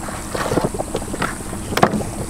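Serrated knife cutting fish and scraping on a cutting board in a run of short strokes, then a sharp knock near the end as the knife is set down on the board, with wind on the microphone.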